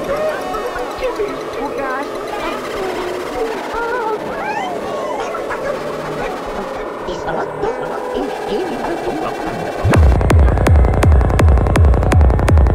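Dark psytrance track in a breakdown: a spoken voice sample and gliding synth sounds over a thin low end. About ten seconds in, the kick drum and bassline drop back in with a fast, even beat, and the music gets much louder.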